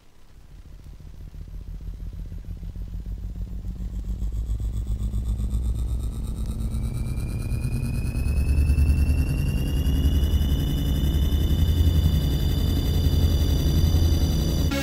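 Intro of a 1991 techno track: a low, fast-pulsing synth bass rumble swells from quiet to loud. About seven seconds in, a high synth tone glides slowly upward and then holds steady near the end.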